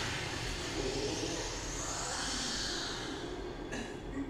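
A steady rushing noise, swelling and fading about midway and breaking off briefly near the end: a sound effect or ambience from the anime episode's soundtrack.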